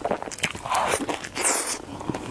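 Close-miked biting and chewing of crispy fried food: a run of crackly crunches that grows into the loudest, densest crunching from about halfway through to near the end.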